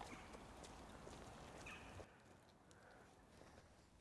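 Near silence: faint background hiss for about two seconds, then complete silence.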